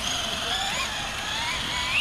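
Traxxas Slash 2WD RC short-course truck's motor whining, rising steadily in pitch as the truck accelerates away.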